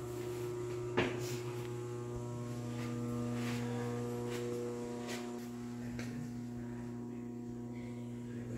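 Steady electrical hum with a ladder of even overtones, like mains-powered equipment or ventilation. A single knock about a second in and a few faint taps after it.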